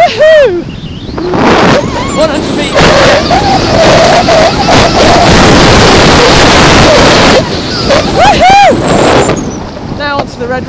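Wind buffeting a skier's camera microphone at speed, mixed with skis running over snow, loudest through the middle of the run. A short rising-and-falling voiced call comes just after the start and another about 8.5 s in.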